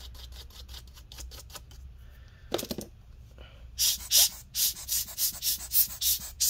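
A swab being rubbed over a laptop's small cooling fan to clean off dust. A quick run of light ticks in the first couple of seconds gives way to louder scrubbing strokes, about four a second, in the second half.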